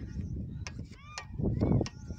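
Birds calling a few times in short, pitched calls over a steady low rumble.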